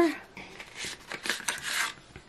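Cardboard pencil box being opened by hand: the round seal sticker on the end flap peeled and the flap worked open, giving a run of soft scraping, rubbing rustles.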